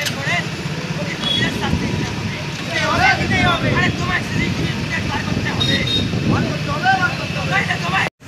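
Slow-moving road traffic: motorcycle and car engines running at low speed in a steady rumble, with scattered voices from people in the street.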